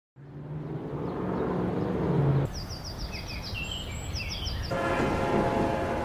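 A recorded song intro starting after a short silence, about a fifth of a second in. It is a dense, rumbling, noise-like soundscape with a low held tone, and short high falling chirps come through in the middle.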